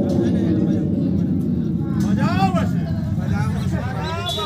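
A large DJ sound system playing loud and distorted through stacked speaker cabinets: a dense, steady low rumble, with a voice-like sound that glides up and then down in pitch about halfway through.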